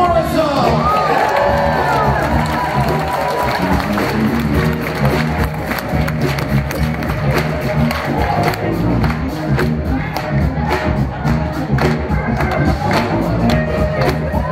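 Live band playing through a theatre PA, with a steady drum beat and bass line, and the audience cheering and shouting over the music.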